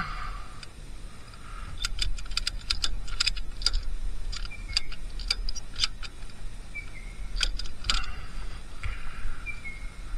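Ratchet tie-down strap being cranked tight: the ratchet's pawl clicks in irregular runs of sharp clicks, in three spells from about two seconds in to about eight seconds in, as the strap is drawn taut to hold the motorcycle down.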